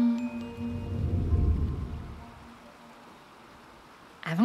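End of a meditation-show intro jingle: the held sung 'ommm' and a high chime fade out, then a low rumbling whoosh swells about a second in and dies away before the midpoint.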